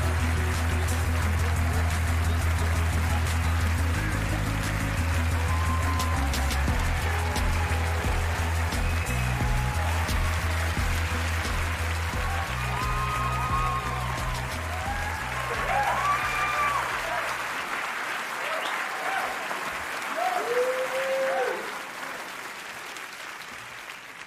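Audience applauding over play-on music with a steady bass line. The music stops about three-quarters of the way through, and the applause dies down near the end.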